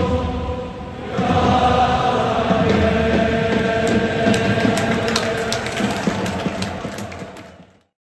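A packed stand of Urawa Reds supporters singing a chant together in a stadium. The singing dips for a moment about a second in and comes back strongly, with a few sharp hits heard in the second half, then fades out near the end.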